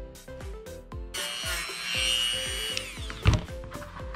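A Dremel rotary tool with a 120-grit sanding band whines steadily as it sands craft foam. It starts about a second in and winds down under two seconds later, over background music with a steady beat. A single sharp knock follows shortly before the end and is the loudest sound.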